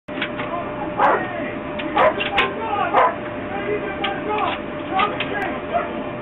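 A dog barking repeatedly, about once a second, with a faint steady tone underneath.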